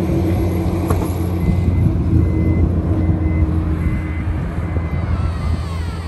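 Toyota Fortuner's power tailgate opening by remote from the smart key, its warning beeper giving short high beeps about every two-thirds of a second from about a second and a half in, over a steady low hum that is the loudest sound.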